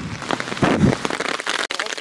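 Rain falling on an open umbrella overhead: a dense run of close, sharp drop hits on the fabric, with a brief louder low rush a little past halfway.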